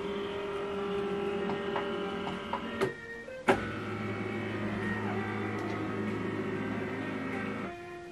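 HP LaserJet Pro MFP M148dw flatbed scanner running a scan, its scan-head carriage motor giving a steady whine. About three seconds in it stops briefly with a couple of clicks, then runs again with a lower hum, and stops just before the end.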